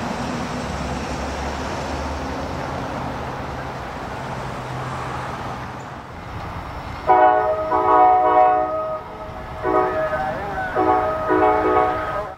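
Road traffic at a grade crossing, a truck driving past and fading. About seven seconds in, a multi-note train horn sounds a chord in one long blast followed by several shorter blasts.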